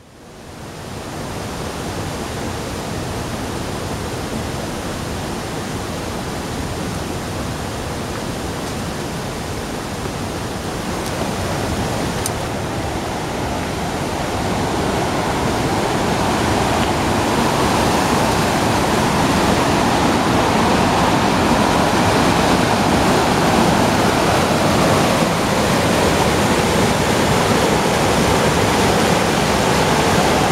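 Rushing water of a rocky stream cascading over boulders, a steady rush that grows louder from about a third of the way in, then holds.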